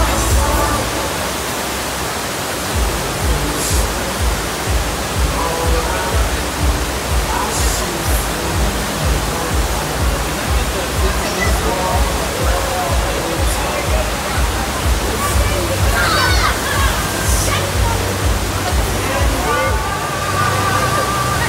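Steady rush of water pumped over a surf simulator's artificial wave, mixed with background music carrying a steady bass beat and people's voices, which are clearest near the end.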